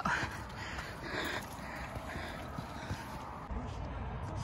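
Footsteps crunching on a dirt hiking trail as people walk uphill, with faint outdoor noise behind them; the sound changes about three and a half seconds in.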